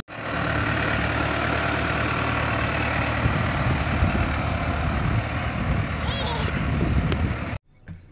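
New Holland utility tractor's diesel engine running steadily as the tractor drives, with a steady low hum; the sound cuts off suddenly near the end.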